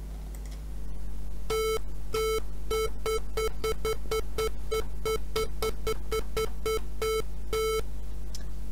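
A software synthesizer's 440 Hz tone (the note A), likely a square wave, gated on and off by presses of a computer key. It plays about twenty beeps, starting about a second and a half in, with a longer first and last couple and a fast run of short ones, roughly five a second, in between.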